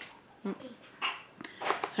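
A pet animal making a brief sound, between a woman's short spoken remarks.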